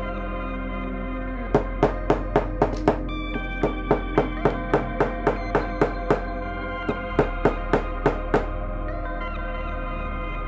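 Hammer striking a pricking iron through leather to punch stitching holes, in three runs of quick sharp taps about four a second with short pauses between, over steady background music.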